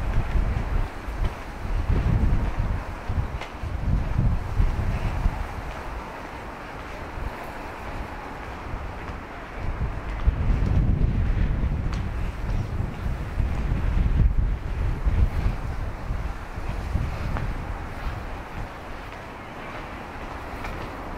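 Wind buffeting the camera-mounted Audio-Technica AT9946CM microphone in gusts, a loud low rumble that comes and goes. It is strongest over the first five seconds and again from about ten to seventeen seconds, over a steady wash of city background noise.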